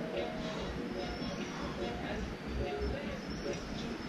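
Indistinct voices, faint and broken, over a steady low rumble.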